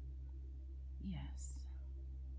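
A soft, breathy narrating voice speaks briefly about a second in, over a steady low hum.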